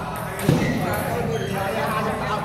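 Table tennis rally: the celluloid ball clicking off the bats and the table, with a loud thump about half a second in.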